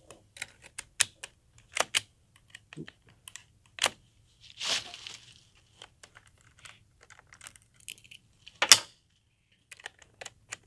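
.22 rifle being reloaded by hand: the magazine and action click and clack at uneven intervals, with a short rattle about halfway and a louder clack of the bolt near the end.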